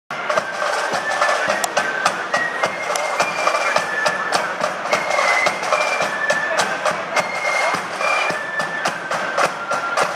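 Marching flute band playing a tune in high, stepping notes, with snare drums and a bass drum beating along.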